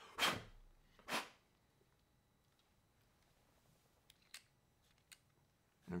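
Two short puffs of breath blown onto a LEGO section, about a second apart, to clear dust from the packaging, then a few faint clicks of plastic LEGO parts being handled.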